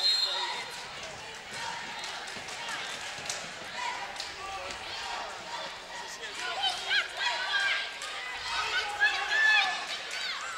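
A basketball bouncing on a gym court amid crowd voices, with the voices getting louder and higher-pitched over the last few seconds.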